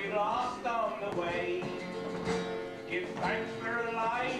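Male folk group singing with acoustic guitar accompaniment, holding a long sustained note through the second half.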